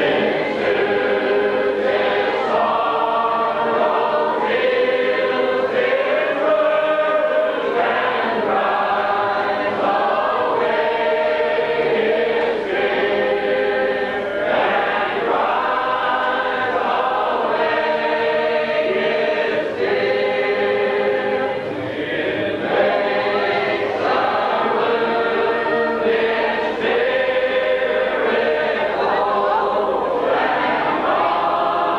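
A congregation singing a hymn together in long, steady phrases, the voices unaccompanied.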